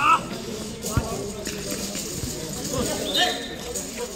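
Players shouting during a small-sided football match, with a loud call right at the start and another about three seconds in, and a dull thud of the ball being kicked about a second in.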